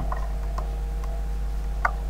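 A few light computer mouse clicks, the clearest near the end, over a steady low hum.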